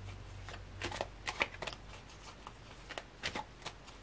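Tarot cards being shuffled and handled by hand: a run of irregular light clicks and flicks.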